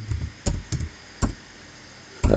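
Computer keyboard keystrokes: about five separate clicks with a dull thump, typed at an uneven pace in the first second and a half.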